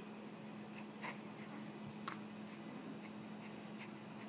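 Quiet small-room tone with a low steady hum and a few faint, scattered soft clicks.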